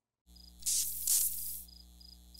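Sound effects for a neon-sign logo bumper: a steady electrical hum sets in after a brief silence, a hissing swell rises about half a second in and fades after a second, and faint high cricket-like chirps repeat in the background.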